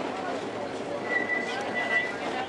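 Heritage streetcar's steel wheels squealing on the rails, one high steady squeal lasting about a second in the second half, over the chatter of passengers in the car.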